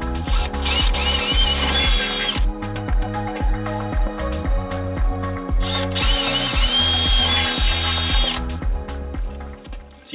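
Cordless drill with a 3/16-inch cobalt bit boring through an aluminum RV step tread, in two runs of about two seconds each with a wavering high whine. Background music with a steady beat plays throughout.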